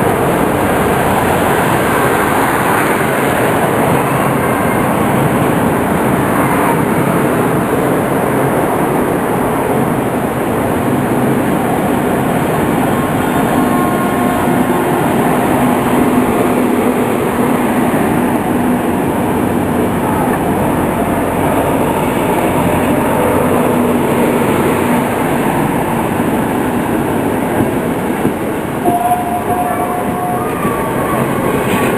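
Intercity passenger train's coaches rolling slowly past at close range: a steady, loud noise of steel wheels running on the rails.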